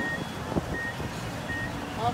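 Vehicle reversing alarm sounding: three short, high electronic beeps at an even pace, about 0.7 s apart, over steady outdoor noise.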